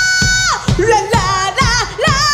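A live rock band with a woman singing lead: she holds one long note, then breaks into a run of quick rising-and-falling turns and lands on a new held note near the end, over electric guitars and a steady drum beat.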